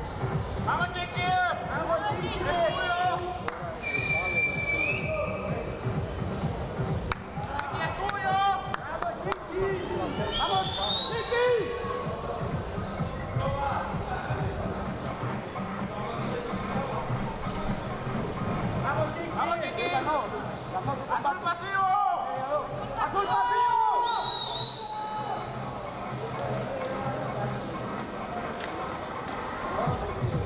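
Indistinct shouting voices of coaches and onlookers, with scattered thumps and a few short, high whistle-like tones, one of them rising in pitch.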